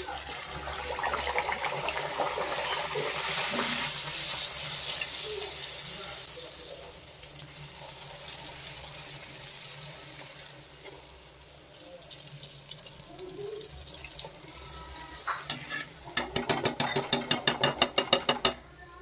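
A puri deep-frying in hot oil in a kadai, sizzling strongly for the first several seconds after it goes in, then dying down as it puffs. Near the end, a quick run of sharp clicks, about six a second.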